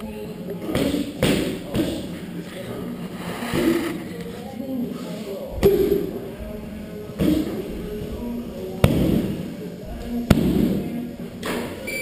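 Strikes landing on handheld Muay Thai pads: a string of sharp smacks a second or more apart, the hardest about halfway in and near the end.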